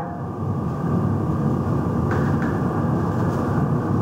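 Steady low rumbling background noise, with two faint clicks about two seconds in.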